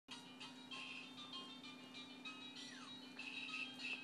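Tinny electronic melody, as from a battery-powered baby musical toy, playing short bright notes in a repeating tune over a steady low hum.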